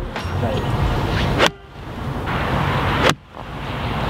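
Steady wind noise on the microphone, broken by two sharp clicks, one about a second and a half in and one about three seconds in. The second click is a golf iron striking a ball off the tee.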